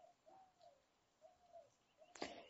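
Near silence with a faint bird calling in the background: three short, low notes, each rising and then falling.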